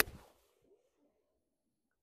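Golf wedge striking a ball off a tight fairway lie: one sharp click at impact with a brief brush of turf, dying away within about half a second.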